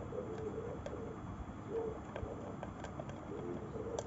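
A cat eating dry kibble from a bowl, with faint scattered crunching clicks. Over it runs a string of short, clear mid-pitched notes, one every half second or so.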